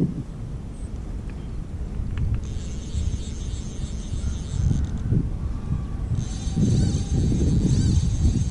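Wind and handling noise rumbling on the microphone. A high, steady buzz comes in twice for a couple of seconds each time.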